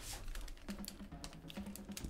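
Computer keyboard keys clicking in a quick, irregular run.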